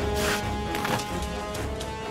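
Film score music with sustained held notes, and a short noisy swish about a quarter second in.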